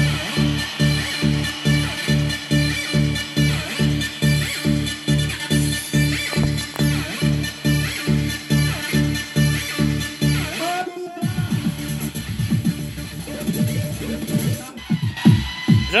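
Panasonic RX-DT505 boombox playing an electronic dance track from CD through its own speakers, with a heavy, steady bass beat of about two and a half beats a second. The beat drops out about eleven seconds in and a section with gliding, voice-like sounds follows.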